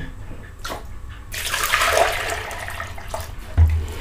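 Water pouring into a plastic dipper, filling it with a steady rush that starts about a second in and lasts about two seconds, followed by a short low thump near the end.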